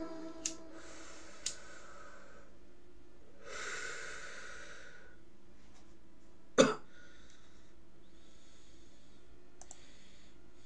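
Two lighter clicks and a drawn-in breath while a small glass pipe is lit, then a long breath out a few seconds later. About six and a half seconds in comes a single loud cough.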